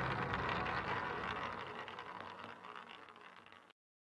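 Hissy, fading tail of the closing sting of a logo outro, dying away steadily and cut off to silence near the end.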